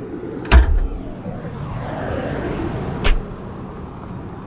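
Bonnet release lever pulled on a Suzuki hatchback: the bonnet latch pops with a sharp knock about half a second in. A second, lighter click comes about three seconds in.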